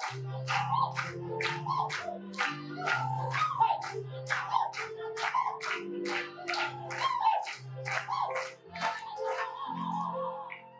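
Women's voices singing a lively song in unison over steady low accompaniment, with a sharp clap-like beat about three times a second.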